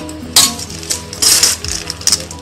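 Steel ladle striking and scraping a stainless steel bowl while scooping dry puffed-rice mixture: a sharp clink about a third of a second in, then a longer scraping rustle about a second later. Background music plays throughout.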